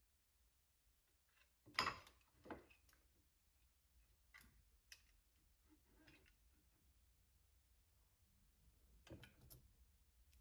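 Mostly quiet, with a few light knocks and clicks of a thin wooden strip being handled and set down on a miter saw's table. The loudest knock comes just before two seconds in, a second one half a second later, then a few faint ticks and a small cluster of knocks near the end.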